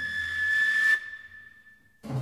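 Solo flute holding one high, breathy note that swells and then breaks off about a second in, leaving a faint thread of the same pitch.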